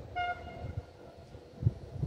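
A brief toot from a distant train horn: one pitched note, strongest for a split second, then fading out. Low gusts of wind buffet the microphone, and there is a thump near the end.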